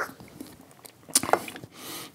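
Small mouth clicks and lip smacks of a taster working a sip of hot black tea around the mouth. There is a sharper click a little after a second in and a soft breath near the end.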